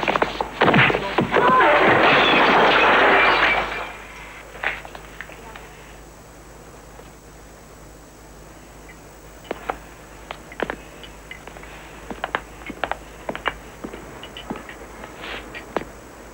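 A fist-fight punch lands with a sharp smack, followed by about three and a half seconds of loud scuffling and crashing. After that it drops to a low background with scattered light knocks.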